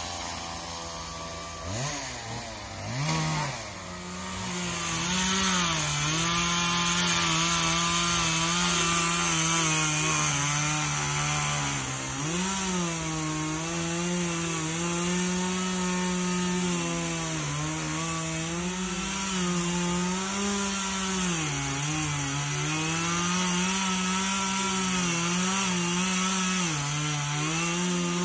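Petrol chainsaw blipped a couple of times, then held at full speed while sawing through wood. Its pitch repeatedly sags and recovers as the chain bogs under load in the cut.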